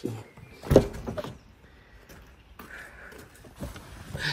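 A single loud thump about three-quarters of a second in, followed by a lighter knock and quieter rustling, as someone climbs into the driver's seat of a Mercedes CLK convertible, handling the open door and settling in.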